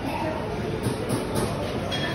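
Busy dining-room ambience: a steady rumble of room noise with murmured voices and a few light clicks about a second in.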